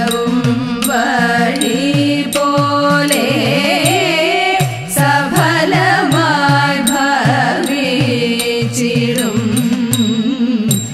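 Women's voices singing a Thiruvathirakali song in Carnatic style, accompanied by an idakka, the Kerala hourglass drum, whose strokes swoop down and back up in pitch, two or three a second.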